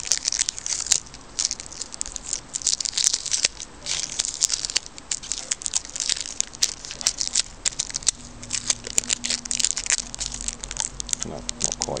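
Adhesive tape being peeled and unwrapped from the outer coil of a small power transformer: a run of irregular crackling and tearing.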